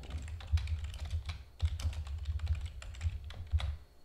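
Fast typing on a computer keyboard: a quick, uneven run of key clicks over a dull low thump, stopping shortly before the end.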